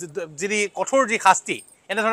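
Speech only: a man talking steadily.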